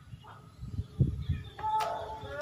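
Dull low thumps from a man doing sit-ups on a concrete floor, the loudest about a second in, followed near the end by a short pitched sound.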